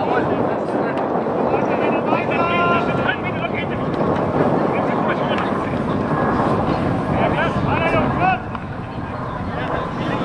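Steady rushing of wind on an outdoor microphone at a football pitch, with men shouting on the pitch about two seconds in and again near the end.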